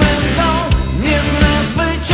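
Rock music: drums and bass under a lead melody that bends and slides in pitch.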